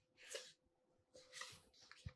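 Near silence: room tone with a faint steady hum and two faint, brief noises, about a third of a second in and again near a second and a half.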